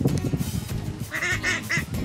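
Domestic ducks quacking: three short calls in quick succession in the second half.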